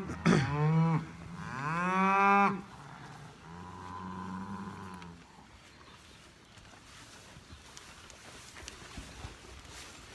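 Beef cattle mooing: two loud calls in the first couple of seconds, then a fainter, steadier one around four seconds in. After that there are only faint clicks.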